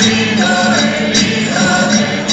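A mixed group of men and women singing a Spanish Christmas carol (villancico) together, accompanied by guitars, in held notes that step in pitch about every half second.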